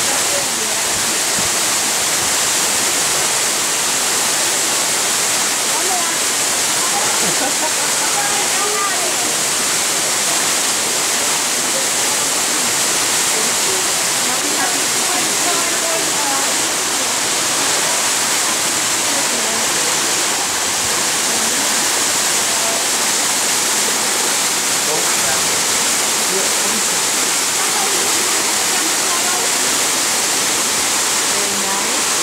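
Waterfall pouring into a rocky pool and shallow stream: a steady, unbroken rush of falling and running water.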